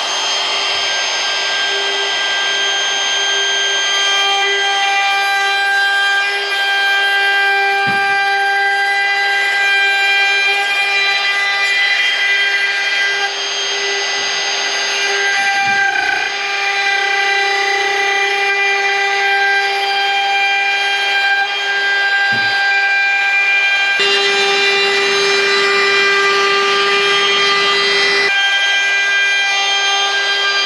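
DeWalt router with a 1.5 mm slot cutter running at full speed while cutting a T-trim groove along the edge of lightweight plywood: a steady high whine, with a few brief catches as the cutter takes the wood.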